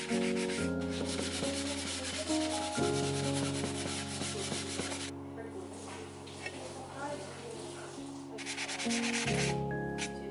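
Abrasive sanding sponge rubbed quickly back and forth over the surface of a clay tile, smoothing it for glazing. The rasping strokes stop for about three seconds past the middle and then start again, over soft background music.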